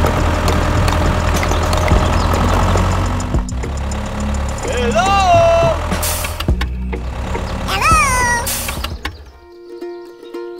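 A tractor engine running steadily at low revs, cutting out about nine and a half seconds in. Two short voice-like cries, each rising then falling in pitch, sound over it about five and eight seconds in.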